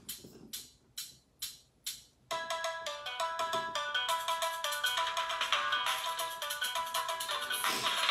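A mobile phone playing a ringtone-style electronic melody of quick stepped notes, starting about two seconds in. Before it come five short clicks, about half a second apart.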